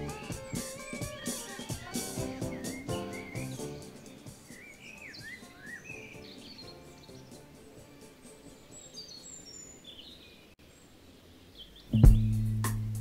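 The band's music dies away over the first few seconds, leaving birds chirping on the record: short, quick rising and falling chirps over a quiet background in the gap between songs. A loud new track begins right at the end.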